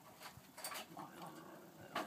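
Seals on a floating dock calling faintly: low, wavering calls in the second half, after a couple of brief sharp noises in the first second.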